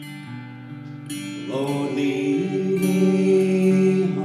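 Acoustic guitar with a woman and a man singing a slow song; the voices swell in about a second and a half in and hold one long note.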